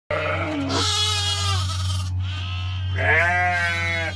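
Lambs bleating loudly: three calls, a short one then two long ones, over the steady low hum of a milking machine's pump.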